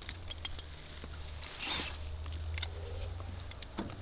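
Jumper cables being handled: scattered light clicks and rattles from the metal clamps and a brief rustle of the cables, over a low steady hum.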